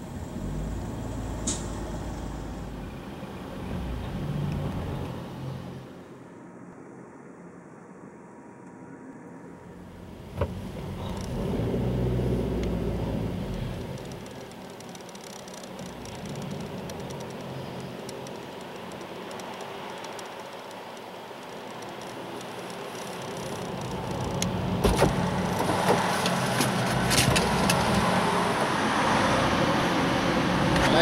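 Car engine and road noise heard from inside the cabin while the car moves slowly through a checkpoint lane. The sound rises and falls, dips a few seconds in, and grows louder toward the end with a few sharp clicks.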